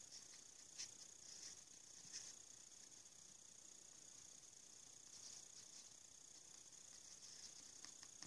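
Near silence, with a few faint brief scratches of a small soft brush working metallic powder into a hot-glue bracelet, over a steady faint high hiss.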